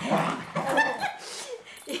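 A dog sniffing and nosing at a folded artificial-leather dog bed, with rustling over the first second and a short high-pitched whine a little under a second in.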